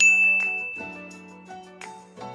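A single bright ding sound effect, struck once and ringing out as it fades over about a second and a half, over soft background music.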